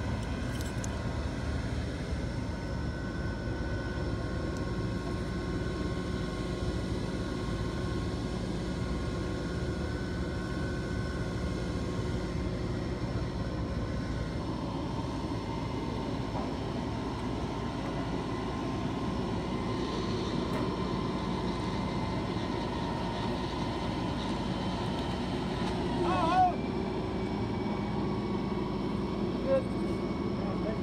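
A tow truck's engine running steadily while it winches the upturned car out of the water: a continuous droning hum with a few held tones that shift slightly about halfway through. A brief wavering squeal comes about four seconds before the end, and a short knock just before it ends.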